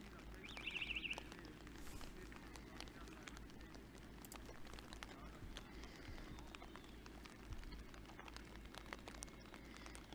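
Rain on an open archery range: a steady hiss with scattered sharp drop clicks throughout. A short high warbling trill sounds about half a second in.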